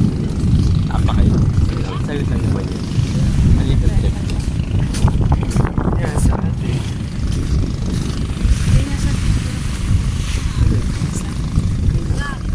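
Wind buffeting the microphone in a constant, uneven low rumble, with faint indistinct voices over it.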